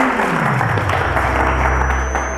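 Studio audience applauding over a show music sting: a pitched tone slides downward during the first second and settles into a low steady rumble as the clapping begins to fade.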